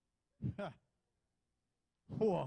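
A man's short wordless exclamation, falling in pitch and in two quick pulses, about half a second in; near silence for the rest.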